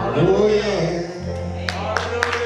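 The end of a gospel song: a man's voice sings out over a held low note from the accompaniment, and hand claps begin near the end.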